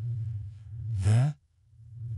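A short sigh from the narrator's voice about a second in, rising slightly in pitch, preceded by a low steady hum.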